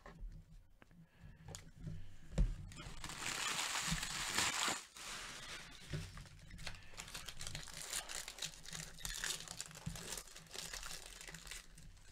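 Foil wrapper of a Bowman Draft trading-card pack crinkling as it is handled and torn open. The crinkling is loudest for a couple of seconds about three seconds in, then goes on as lighter rustling and clicks of cards being handled.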